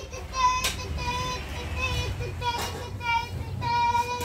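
A child singing a simple tune in high, held notes, with a short knock about half a second in.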